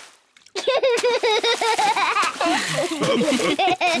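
Cartoon splashing of pool water as a toddler piglet jumps in and kicks, starting about half a second in, with a child's high giggling and squealing over it.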